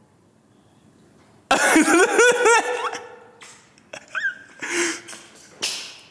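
A woman's excited squealing laughter: a sudden burst of high, wavering voice about a second and a half in, then a few short squeaks and breathy laughs.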